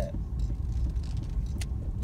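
Steady low rumble of engine and road noise heard from inside a moving car's cabin, with one short click about one and a half seconds in.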